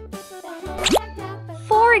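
Light children's background music with a steady bass line. About a second in comes one quick, steeply rising whistle-like cartoon sound effect, and a voice begins near the end.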